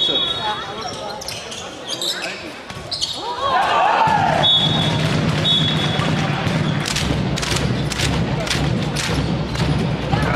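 Handball game in a sports hall: the ball bounces on the court floor and players call out, with two short referee whistle blasts about halfway through.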